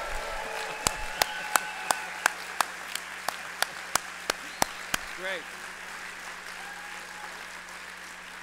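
Audience applauding, with one person's close, sharp hand claps near the podium microphone at about three a second from about one second in to about five seconds in; the applause then fades out.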